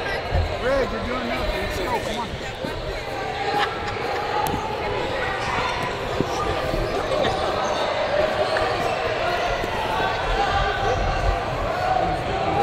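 Busy sports-hall background: indistinct voices of coaches and spectators from around the mats, with scattered thumps and knocks.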